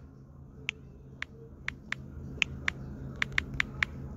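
Typing on a smartphone's touchscreen keyboard: about ten short, sharp key clicks at uneven intervals, over a low steady hum.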